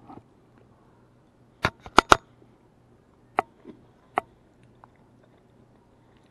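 Five sharp clicks of a metal fork: three close together about two seconds in, then one more at about three and a half seconds and another at about four seconds.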